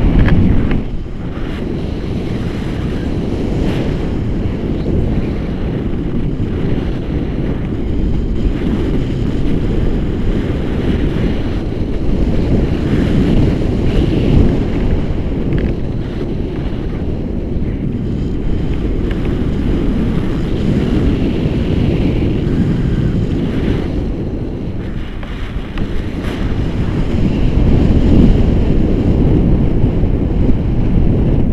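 Wind rushing over an action camera's microphone in the airflow of a paraglider in flight: a loud, steady low rumble that eases briefly and swells again near the end.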